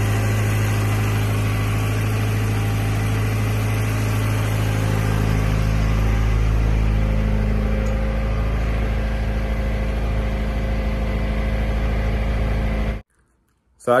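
Freshly rebuilt turbocharged Cosworth engine running steadily and evenly on its new map, sounding healthy ('absolutely sweet as a nut'). It cuts off abruptly about a second before the end.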